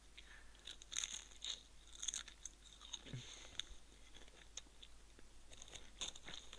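Faint crunching and chewing of a potato crisp in the mouth, with crackles thickest in the first two seconds or so and thinning out after. A short low hum of voice about three seconds in.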